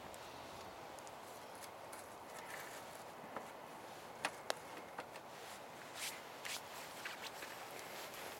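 Wet sticks being pushed into the fuel opening of a StoveTec rocket stove. A few sharp wooden clicks and knocks, two close together about halfway through, then softer scuffs near the end, over a faint steady hiss.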